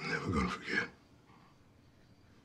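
A person's short wordless cry or moan, under a second long, its pitch sliding down.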